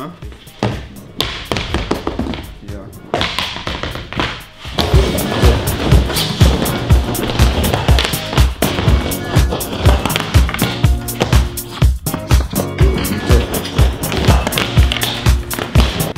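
Skateboard rolling and clacking on a mini ramp. About five seconds in, background music with a steady beat comes in loud and plays on over it.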